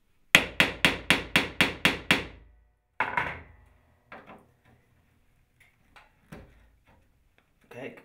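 Claw hammer striking the handle of a Phillips screwdriver seated in a rusted hinge screw: eight quick, sharp blows at about four a second, then one more a second later. The blows drive the tip firmly into the screw head and shock the rust loose so the seized screw can be turned out.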